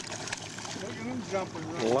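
A hooked largemouth bass thrashing and splashing at the water's surface right beside the boat, a faint patter of spray. Soft voices murmur over it, and a loud spoken exclamation comes right at the end.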